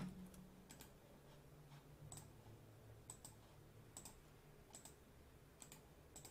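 Faint computer mouse clicks, about ten, spaced irregularly with some in quick pairs, over a low steady hum.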